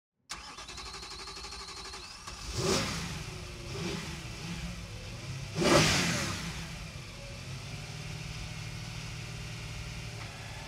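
BMW car engine idling and revved in short blips: one about two and a half seconds in, a smaller one near four seconds and the loudest just before six seconds. After each blip it drops back to a steady idle.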